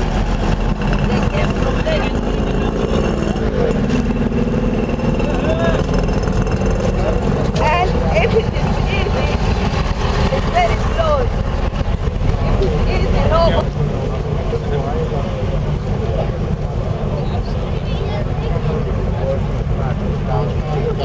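Buses and other traffic driving slowly past close by with a steady low engine rumble, mixed with the voices of a large crowd calling out.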